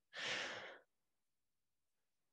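A man's short breath into a close headset microphone, lasting under a second, right after he stops talking, then near silence.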